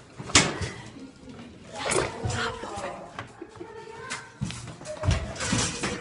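Handling noise on a phone's microphone: a sharp knock just after the start and more bumps and rubbing as the phone is pressed against a wig and moved, over faint muffled voices and music.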